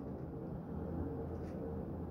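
Faint, steady low background hum of outdoor ambience, with no distinct sound events.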